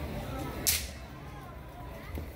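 A brief high-pitched swish, about two-thirds of a second in, over a steady low rumble.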